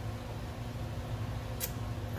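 Steady low background hum from an appliance, with one short sharp click about one and a half seconds in.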